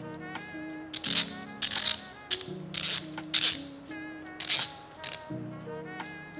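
Metal burr parts of a 1Zpresso ZP6 hand coffee grinder handled and turned, giving about seven short, sharp scraping clicks between about one and five seconds in, louder than everything else, as a part is worked to see if it comes off. Soft background guitar music plays under them.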